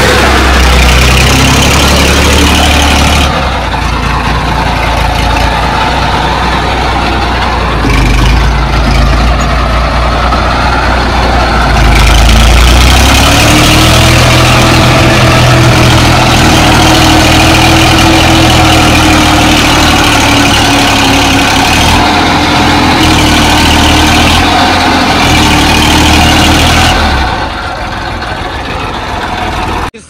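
Tractor diesel engine running hard and close by, a steady heavy drone. About halfway its pitch rises and holds, then it eases and gets quieter a few seconds before the end.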